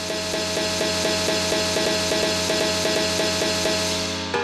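Electronic dance music build-up from a DJ set over a festival sound system: a loud hiss of noise over a fast, even stutter of repeated notes, swelling in the first second and then holding.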